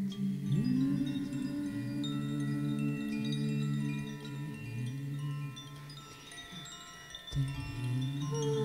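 Improvised meditation music: low sustained drone tones, one sliding up in pitch about half a second in, under scattered high ringing chime notes. It thins out and quietens around six seconds in, then a low thump and fresh drone tones come in near the end.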